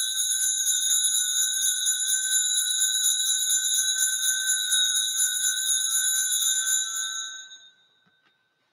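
Altar bells shaken in one continuous, shimmering ring, marking the elevation of the host at the consecration; the ringing fades out about seven seconds in.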